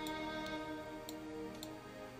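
Soft background music of long sustained notes, with a few light, sharp clicks about half a second apart in the first half.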